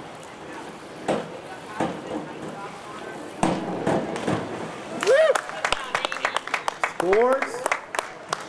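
A 1 m diving springboard knocking as the diver bounces and takes off, then the splash of a head-first entry about four seconds in. After that come shouted whoops and clapping.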